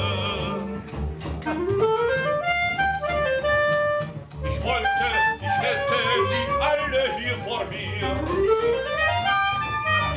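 Instrumental music in which a woodwind plays fast rising runs, once about a second and a half in and again near the end, with busy melodic figures between them over a low accompaniment.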